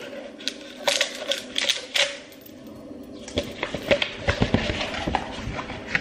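A rubber band is slipped off a rolled, plastic-coated poster, and the poster is unrolled and handled. It makes scattered crinkling clicks and crackles, a lull of about a second near the middle, then a denser run of crackling.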